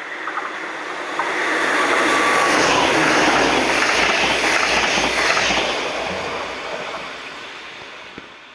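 NS ICMm 'Koploper' electric intercity train passing through the station at speed: a rushing rail and wheel noise that swells as it approaches, is loudest for a few seconds as the carriages go by with low knocks of the wheels, then fades away.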